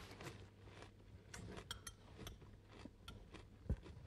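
Faint clinks of a metal spoon against a bowl and quiet chewing, with a soft thump near the end.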